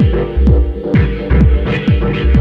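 Dub techno: a steady four-on-the-floor kick drum with a falling pitch, about two beats a second, over a deep sustained bass, a steady synth drone and short hi-hat ticks between the kicks.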